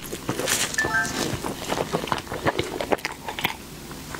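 Close-miked mouth sounds of biting and chewing a soft, doughy pink dessert bun: quick wet clicks and smacks, with a brief squeak about a second in.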